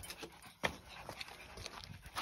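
Faint footsteps scuffing over dry dirt and wood scraps: a few scattered clicks, the sharpest about half a second in.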